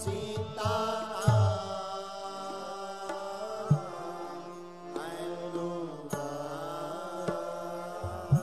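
A man singing a Hindi devotional bhajan in long, held notes that glide and bend, over a steady drone of instrumental accompaniment. A few low drum strikes land through it.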